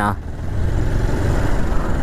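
Motorcycle being ridden along: its engine running steadily, blended with rushing wind noise on the camera microphone.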